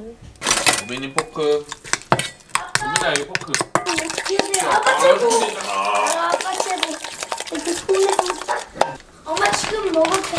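Metal spoon clinking and scraping against a stainless steel mixing bowl as a thick gochujang sauce is stirred, with many quick clicks throughout.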